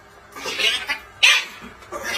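Small dog and cat play-fighting, with short, sharp animal calls: two bursts about a second apart, the first longer.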